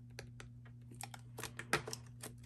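Apple Pencil tip tapping on an iPad's glass screen while writing a number: a quick, irregular string of light clicks.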